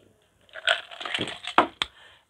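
A deck of Lotería cards being shuffled by hand: papery rustling and clicking of the card stock starting about half a second in, with a sharp tap near the end.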